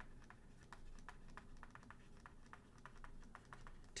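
Faint, irregular clicks and taps of a stylus on a tablet screen while words are handwritten, a few clicks a second.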